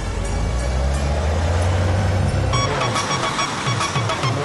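A bus engine runs with a steady low rumble. About two and a half seconds in, background music with sharp plucked notes takes over.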